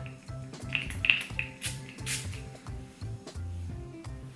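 Background music with a steady beat. Over it, a hand-pump spray bottle of hair primer mists onto the hair in two or three short hisses, between about one and two seconds in.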